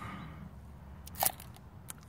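Quiet handling noise: a low steady rumble with a few short clicks and a brief crackle a little after a second in, and one more click near the end.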